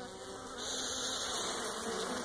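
Honeybees buzzing on a frame lifted from the hive, with a steady breath of air blown across the frame, starting about half a second in, to move the bees off the brood.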